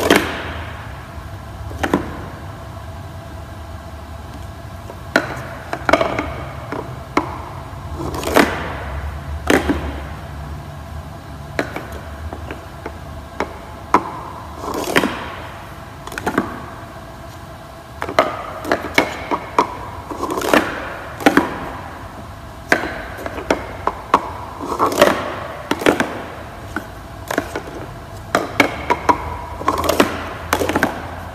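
Plastic sport-stacking cups clacking against each other and tapping on a wooden floor as they are set down into small pyramids and then slid back together into one nested stack. The clicks come in quick irregular flurries with short pauses between them.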